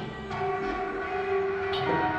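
Tenor saxophone, bowed cello, electric guitar and electronics holding long, overlapping sustained notes that form a dense, horn-like chord; new notes enter about a third of a second in and the pitches shift near the end.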